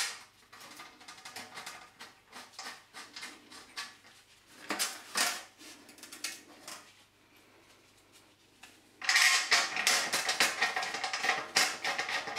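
Metal clicking and scraping as a steel mesh guard is handled against the sheet and bolts are screwed into rivet nuts. There are scattered light clicks, a louder clatter about five seconds in, and from about nine seconds a dense run of rapid clicks and rattles.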